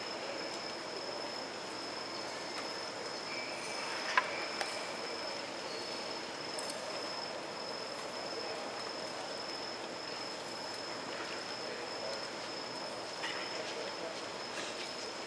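Steady background noise of a large indoor arena, with a thin, high, steady whine throughout and one sharp click about four seconds in.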